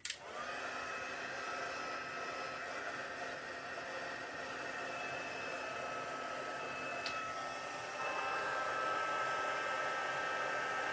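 Craft embossing heat gun clicking on, then blowing steadily with a faint whine, melting white embossing powder onto cardstock. It grows a little louder about eight seconds in.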